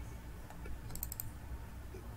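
A quick run of about four small computer clicks about a second in, over a low steady hum.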